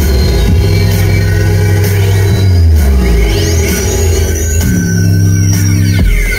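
Live electronic dance music played on synthesizers through a loud concert sound system: a deep, heavy bass line whose notes slide down in pitch, under sustained synth tones.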